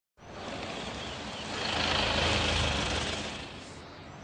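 A Toyota Hilux pickup driving up on a paved road, its engine and tyre noise growing louder about halfway through, then dying down near the end as it pulls in.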